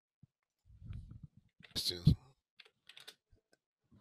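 A short burst of voice about two seconds in, with faint murmuring before it, then a few light separate clicks like keys being pressed.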